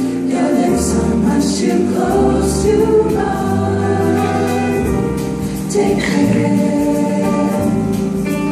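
Mixed vocal jazz ensemble singing a slow ballad in close multi-part harmony, with sustained chords shifting through the phrase. An upright bass and a drum kit accompany them quietly.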